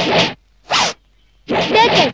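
A zipper on a sleeveless jacket pulled in three quick strokes, the middle one short.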